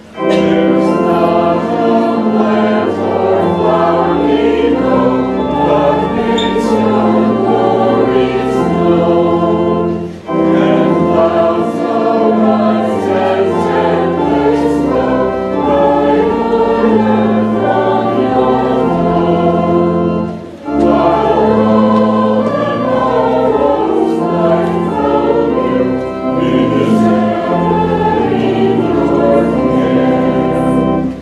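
A congregation of mostly young women's voices singing a hymn together in unison, with held organ chords underneath. The singing breaks briefly twice, about ten and twenty seconds in, between verses or lines.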